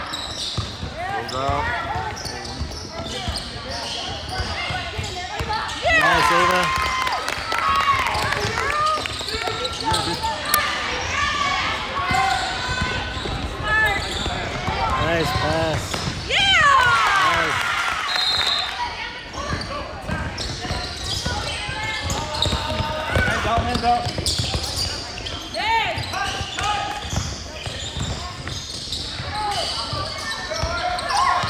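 Youth basketball game in a gym: a basketball bouncing on the court under voices of players and spectators calling and shouting, with louder swells of shouting about six seconds in and again near seventeen seconds, echoing in the large hall.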